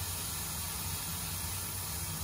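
Steady air hiss from the cobot's suction gripper running with the suction switched on.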